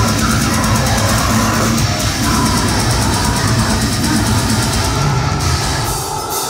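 Deathcore band playing live and loud: heavy distorted guitars over a full drum kit, heard through the venue's PA.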